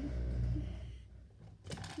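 Handling noise on a phone's microphone: a low rumble that fades out about a second in, then a short rustle near the end.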